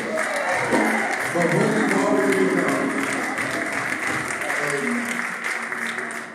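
Church congregation and choir applauding and calling out in praise, with keyboard music playing under the clapping; the applause eases off near the end.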